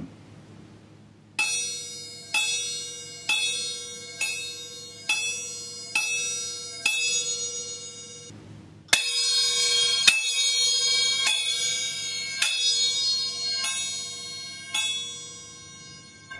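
A pair of chappa, small Japanese hand cymbals, struck open and left to ring with a bright, high metallic ring. First come seven light single strokes about a second apart, the delicate 'chin' sound. Then, about nine seconds in, a louder passage of quick repeated strokes rings on together and fades out near the end.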